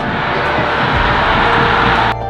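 Stadium crowd cheering a goal, swelling over background music and cutting off abruptly near the end.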